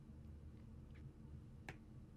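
Near silence with a low room hum, broken by a stylus tapping on a tablet's glass screen: a faint tick about a second in and one sharper click near the end.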